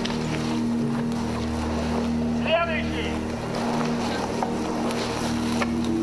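Documentary soundtrack played over a hall's loudspeakers: a steady low musical drone over a rumbling noise, with one brief voice-like cry about two and a half seconds in.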